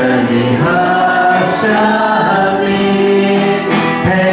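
Church worship band performing a Mandarin praise song: voices singing long held notes together over electric keyboard accompaniment, with a steady beat.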